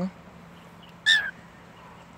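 A single short, high-pitched chirp from a grey cockatiel about a second in.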